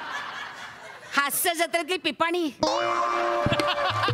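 Laughter in short bursts about a second in, followed near the end by a held, steady tone lasting about a second.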